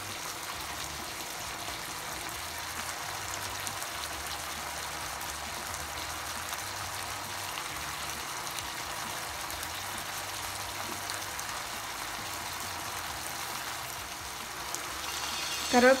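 Chicken pieces in a spiced masala sizzling steadily in oil in a nonstick pan over a gas flame.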